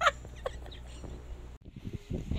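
A woman's short laugh right at the start, with a smaller laugh-like burst about half a second in, then only low background noise; the sound drops out briefly near the end.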